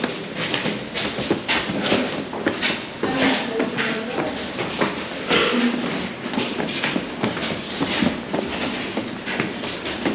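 Footsteps of several people going down a stairwell, a quick, irregular clatter of shoes on the steps.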